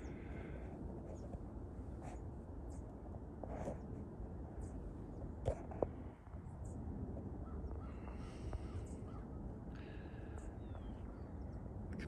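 Faint distant birds calling, a few caws spaced several seconds apart, over low steady background noise.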